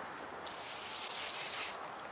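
A bird chirping: a high, rapid series of chirps, several a second, starting about half a second in and lasting just over a second.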